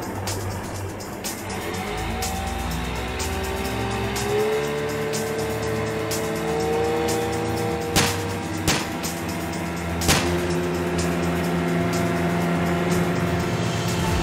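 Jet ski engines running at speed, their pitch rising as they accelerate, under dramatic soundtrack music. Three sharp hits come near the 8 and 10 second marks.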